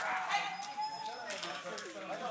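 A dog whining in one long, slightly wavering note that fades out about a second in, with a few short sharp sounds after it.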